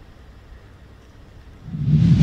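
Faint low street rumble, then about one and a half seconds in a whoosh sound effect swells up to loud, with a low hum beneath it, as a news transition sting.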